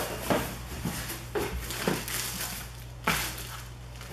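Cardboard box and plastic-wrapped contents being handled: a few short knocks and rustles, the loudest about three seconds in.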